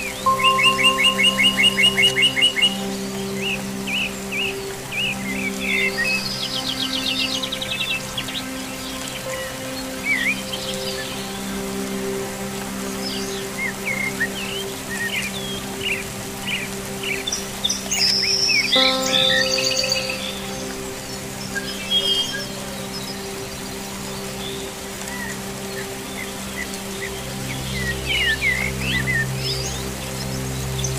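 Small songbirds chirping and trilling, with a loud rapid trill in the first two or three seconds and another higher trill a few seconds later, over steady held music notes and a faint hiss of rain.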